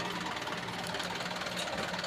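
The engine of a hydraulic auger drilling rig running steadily, with no change in speed.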